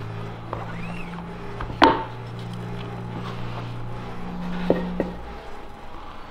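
Squeegee stroke through ink on a screen-print screen, then a sharp knock about two seconds in and two lighter clicks near the end as the hinged screen on the hand press is lifted off the printed shirt, over a steady low hum.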